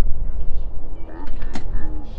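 Sounds of wheelchair tennis play on a court: a steady low rumble with a few sharp knocks, the loudest about one and a half seconds in, and short high squeaks.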